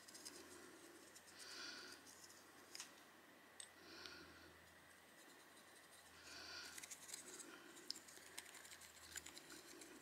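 Faint scratching and light ticks of a small paintbrush dabbing dry pigment powder into a silicone flower mold, thickening in the last few seconds, with soft swells of hiss coming and going about every two seconds.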